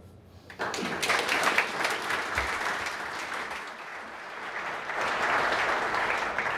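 Audience applauding, starting about half a second in, easing off a little midway and swelling again near the end.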